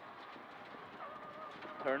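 Faint noise inside a Mitsubishi Lancer Evo X rally car at speed, with a faint steady whine coming in about halfway through.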